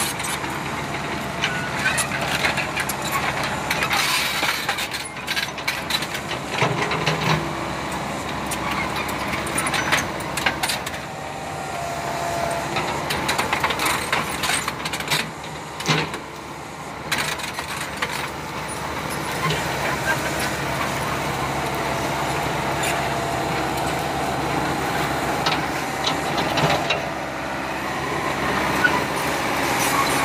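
Small tracked excavator's diesel engine running under work, with scattered knocks and clanks as it digs and moves on its tracks.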